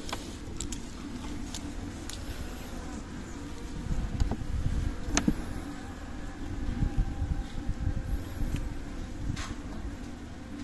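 Steady buzzing of honeybees flying around the hives of a colony that has just swarmed. Low rumbling thumps and handling noise come in on top from about four seconds in.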